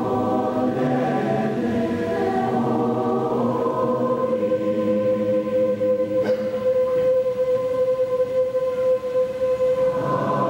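A large choir singing several moving parts, then, from about three and a half seconds in, holding one long, steady note. A faint click sounds about six seconds in.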